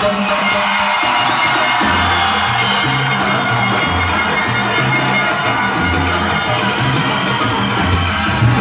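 Salsa music with brass, played loud, with the audience cheering over it; the bass line is missing at first and comes back in about two seconds in.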